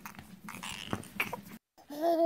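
Soft whimpering from a cartoon toddler, with small clicks and rattles of a toy being handled.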